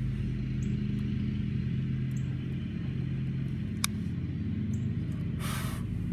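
A steady low machine hum runs under the scene, with one sharp click of a long-nosed utility lighter being triggered about four seconds in, and a brief rushing hiss near the end.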